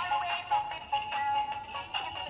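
Electronic Groot toy figure playing a synthesized tune from its built-in sound chip, a short melody of held notes.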